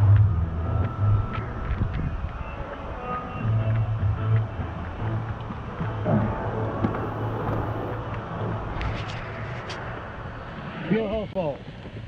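Low rumbling on the microphone while a large inflatable tube is carried up wooden stairs, with people's voices in the background. A few sharp clicks come about nine to ten seconds in.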